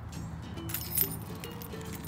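A key ring with a car key and a remote-start fob jangling as it is handled, with a few light clinks about two-thirds of the way through the first second and again at about one second, over faint background music.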